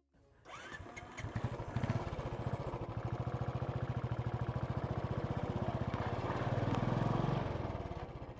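Royal Enfield Bullet 350's single-cylinder engine running as the motorcycle rides along, its firing pulses an even rapid thump. It comes in suddenly, grows louder after a second or so, and eases off near the end.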